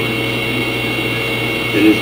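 Steady background hum with a faint high-pitched whine, unchanging throughout; a man's voice starts again near the end.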